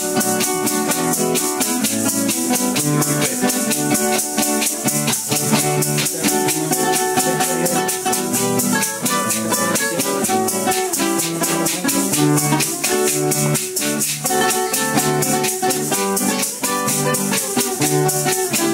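Instrumental passage on two acoustic guitars, strummed and picked, with maracas shaking a fast, even rhythm throughout.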